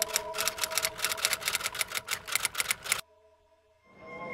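Typewriter sound effect: a rapid run of key clicks over a held synth chord, cutting off suddenly about three seconds in. A moment of near silence follows, then room noise fades in near the end.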